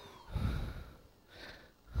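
The small electric motor of a handheld vacuum-like gadget winds down, its whine gliding lower and fading out within the first half second. A few soft, breathy puffs follow.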